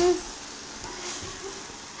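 A child's short, loud voiced 'mm' at the very start, a reaction to a very sour taste. Then a quiet room with faint, indistinct voices.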